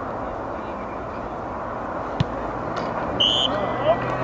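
Quiet outdoor crowd murmur with faint voices, broken by one sharp click a little after two seconds. A single short referee's whistle blast follows about three seconds in, the signal for the penalty kick to be taken.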